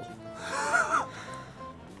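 Quiet instrumental background music, a cover of a video-game theme, playing steadily, with a short breathy laugh from a person about half a second in.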